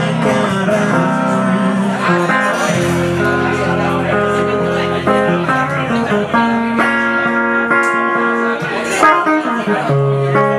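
An electric guitar and a second guitar playing a song live, with held chords that change every second or two.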